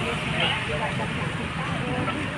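Steady low rumble of tractor and heavy-equipment engines running in a street, with people talking nearby.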